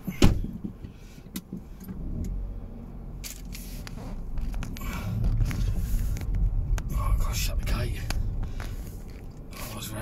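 Car engine heard from inside the cabin, pulling away from a junction and getting louder from about five seconds in. A single sharp click just at the start is the loudest sound.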